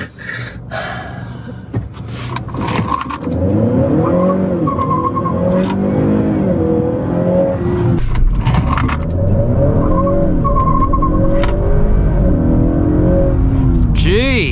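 Tuned Honda Accord 2.0T turbo four-cylinder launched at full throttle from a stop, heard from inside the cabin. The engine note climbs in pitch and drops back with each upshift of the 10-speed automatic as the car pulls hard, and the stability control reins in wheelspin.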